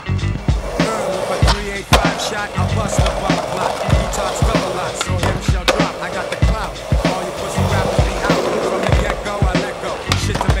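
Hip-hop track with a steady drum beat, mixed with skateboard sounds: urethane wheels rolling on pavement and the clack of the board.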